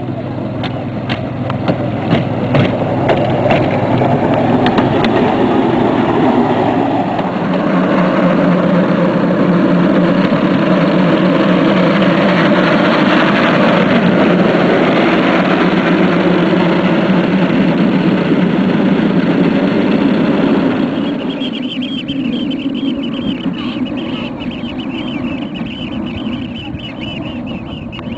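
Small engine of a motorised narrow-gauge rail lorry running as the lorry approaches and passes close. The sound builds, holds a steady low hum through the middle, and fades in the last few seconds as the lorry moves off. Quick clicks run through the first few seconds.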